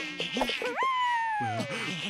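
Cartoon mosquito buzzing in a high whine, with a long whine in the middle that slides down in pitch.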